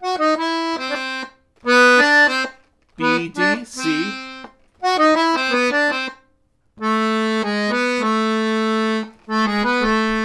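Weltmeister piano accordion playing short right-hand phrases that circle the notes of an A minor arpeggio from above and below (gypsy-jazz enclosures), in a string of brief phrases with short pauses between them. The longest phrase, in the second half, holds long sustained notes.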